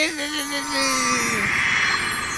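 A cartoon magic-wand spell sound effect: a held, slowly falling voice-like tone gives way about a second in to a swelling, shimmering whoosh.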